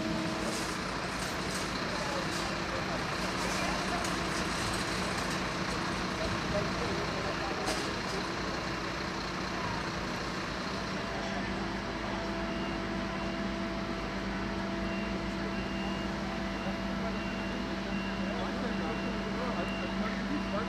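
Parked fire engine running at a fire scene, a steady low drone with held tones from its diesel engine and pump. About halfway through, a faint high beep begins repeating at an even pace.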